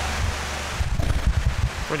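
Wind buffeting the camera microphone: an irregular low rumble over a steady hiss. A voice speaks near the end.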